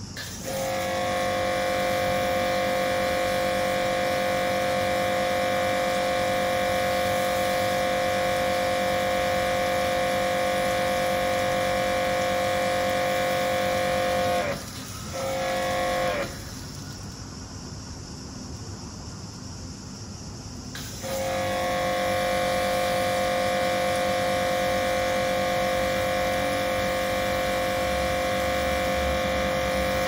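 Karcher K7 pressure washer running under load with a steady whine while its trigger gun sprays through a foam cannon. It stops about halfway, starts again for about a second, pauses for several seconds, then runs steadily again.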